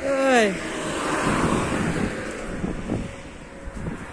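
A vehicle passing on the road, its tyre and road noise swelling and fading over about two seconds, with wind on the microphone. A short falling vocal sound comes right at the start.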